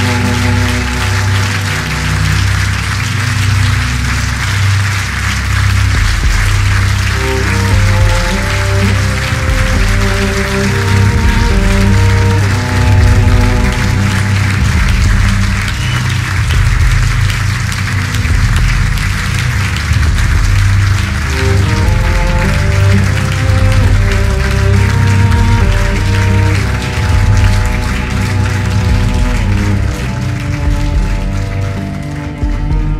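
Drum band music played live: deep held bass notes and shifting melodic notes under a constant high hiss of percussion.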